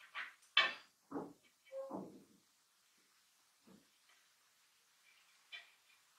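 Cord being pulled through and rubbing against the metal hoop of a handmade dreamcatcher. There are four short scrapes and creaks in the first two seconds or so, then two fainter ones later.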